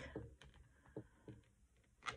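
Near silence with a few faint taps and clicks from hands handling and pressing paper cards onto a journal page.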